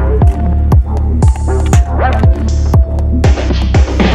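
Electronic background music with a heavy bass, deep kick drums about twice a second and synth notes.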